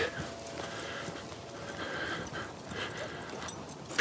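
Faint, steady background noise of an iPhone video recorded while walking, with a few soft taps.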